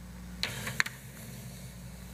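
Quiet room tone with a steady low hum, broken by two short sharp clicks a little under half a second apart, the second one louder.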